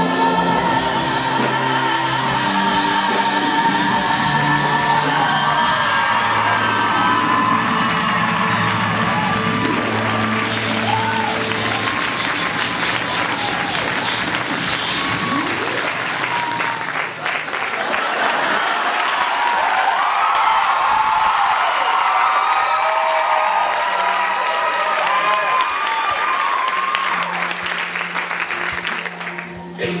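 Live theatre audience applauding and cheering over the band's sustained instrumental music, with a high swooping whistle about halfway through.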